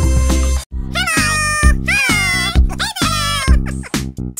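Three cat meows, each rising and then falling in pitch, about a second apart, over a children's-song beat with a steady bass pulse. The meows begin about a second in, after the preceding music cuts off briefly.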